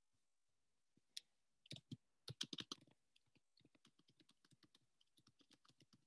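Faint typing on a computer keyboard: a few louder keystrokes in the first half, then a quick, even run of lighter taps, about five a second.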